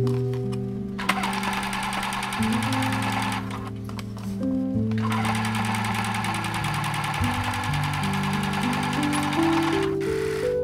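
Computerized sewing machine, a Bernette B37, stitching cotton jersey in two runs of fast, even stitches: the first about a second in, the second after a pause of a second and a half, lasting to the end. Background music plays throughout.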